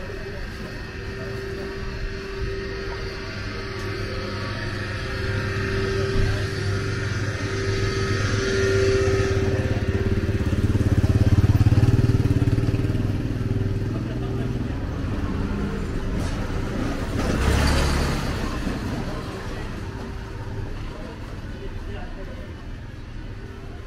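A motorcycle engine runs close by over street noise. It grows louder to a peak about halfway through and then fades. A second brief surge of engine noise comes about three-quarters of the way in.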